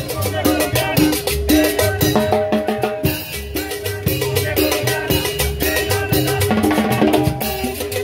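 A live band playing upbeat Latin dance music: brass melody over drums and scraped percussion, with a steady beat throughout.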